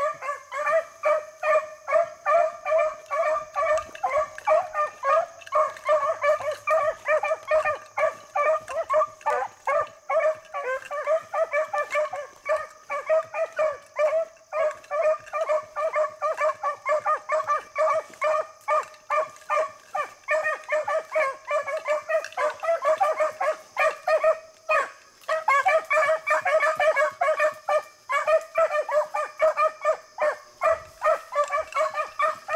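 A pair of beagles baying in full cry while running a rabbit's scent trail: a rapid, nearly continuous run of overlapping barks with only a brief break about 25 seconds in. The steady voicing of both hounds is the sign that they are on the track.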